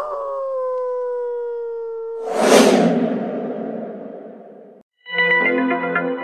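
Edited-in sound effects and music: a held tone that drops slightly in pitch and levels off for about two seconds, then a noisy whoosh that swells and fades. About five seconds in, a sustained musical chord sting starts.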